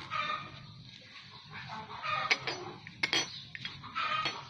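A series of short animal calls, with a few sharp clicks or knocks in the second half.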